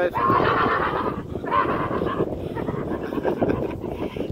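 A man laughing hard, in two wheezy, breathless bouts over the first two seconds, then trailing off, with footsteps knocking on a wooden boardwalk underneath.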